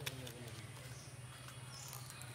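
Faint clicks and crackles of charred skin being peeled by hand from a roasted pointed gourd, over a steady low hum.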